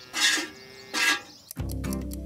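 Soft background music, with milk squirting by hand into a metal pail in two short hisses. About a second and a half in, a low steady hum joins the music.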